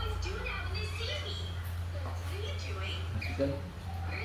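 People talking, in short bits of speech, over a steady low hum; near the end someone says "对" ("yes").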